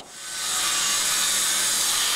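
Handheld electric circular saw cutting through a sheet of plywood: the sound builds in over the first half second, then runs steadily with a hissing rasp.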